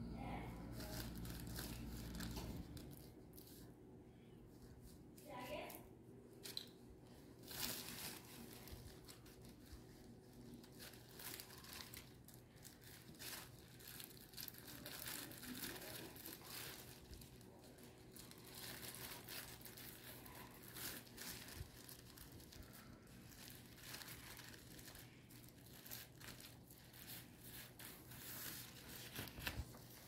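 Thin plastic garbage-bag sheeting crinkling in soft, scattered rustles as it is handled, folded and pressed onto a bamboo kite frame.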